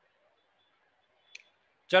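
Near silence broken by a single short, sharp click about a second and a half in, followed right at the end by a man's voice starting to speak.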